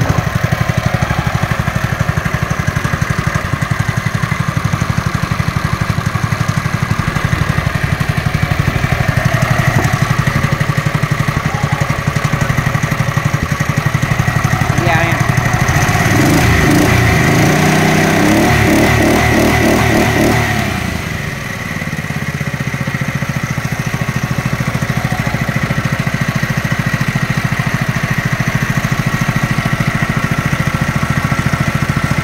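Honda GX160 5.5 hp single-cylinder engine running steadily, belt-driving an air blower used to aerate live seafood. About fifteen seconds in, its speed rises for several seconds. It then drops back with a brief dip and settles into a steady run again.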